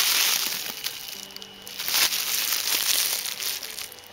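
Bubble wrap and a plastic bag crinkling and crackling as a hand handles a wrapped pin, in two stretches: one at the start and a longer one from about a second in.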